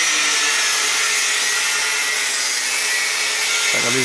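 A handheld power tool running steadily with a high, hissing whir while glaziers fit aluminium-framed glass windows.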